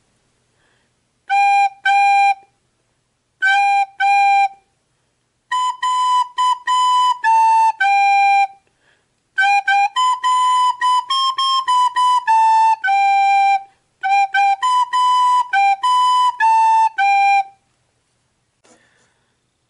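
Soprano recorder playing a simple melody on G, A and B: two short notes, a rest, two more, then longer phrases with brief rests between them, ending a little before the close.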